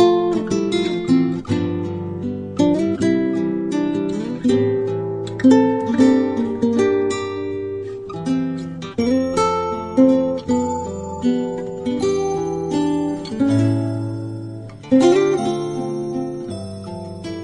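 Background music: acoustic guitar playing a gentle tune of plucked notes and strummed chords.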